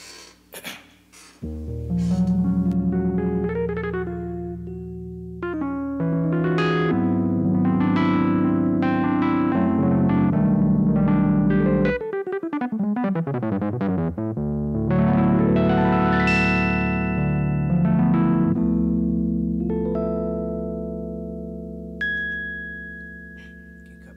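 Electric keyboard playing sustained chords that change every few seconds, with a downward pitch slide about halfway through, then long notes dying away near the end.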